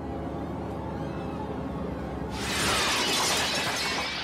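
A low steady drone, then, a little over two seconds in, a sudden loud crash of window glass shattering, its clatter carrying on for well over a second: a film sound effect of a body smashing out through a window.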